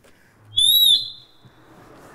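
A short, high whistle heard through a PA loudspeaker during a soundcheck. It starts about half a second in, bends up and down in pitch for about half a second, then a fainter ringing tone trails off.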